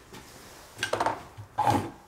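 Plastic air hockey mallet slid and scraped by hand across the table's gritty playing surface, two brief scrapes about a second in and near the end.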